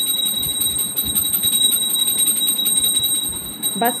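A puja bell ringing continuously with quick, even strokes, giving a steady high ringing tone. It cuts off suddenly near the end.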